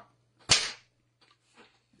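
One sharp smack about half a second in, dying away quickly, followed by a few very faint traces.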